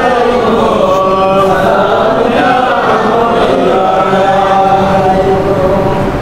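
A man's voice chanting a devotional Islamic verse in long, held notes that glide slowly up and down.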